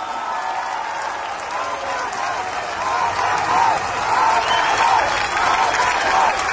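Rally crowd applauding after the speaker's line, getting louder, with many voices calling out together in a repeating rhythm over the clapping.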